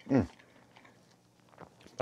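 A short, falling "mm" of appreciation, then faint wet clicks of a person chewing a firm, chewy piece of seitan sausage with the mouth closed.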